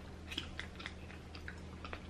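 Faint close-miked chewing of green-lipped mussels, with a few soft, scattered mouth clicks over a steady low hum.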